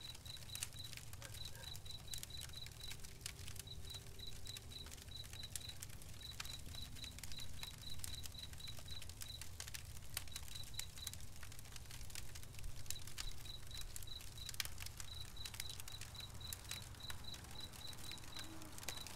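Campfire crackling with scattered sharp pops, over the high, steady chirping of a night insect in quick pulses, about six a second, that come in runs with short gaps.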